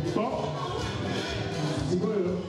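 Music with a repeating bass pulse and a sung vocal line that slides in pitch.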